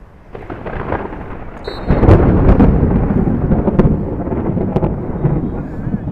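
Fierce thunder rumbling overhead. It grows from faint to loud over the first two seconds, then rolls on heavily.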